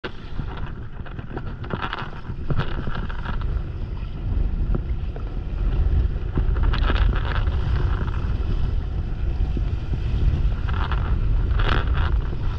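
Wind buffeting the microphone in a constant low rumble while a windsurf board under sail moves through the water, with short bursts of rushing, splashing hiss every few seconds.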